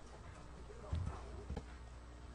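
Two faint low knocks about half a second apart, over a steady low hum.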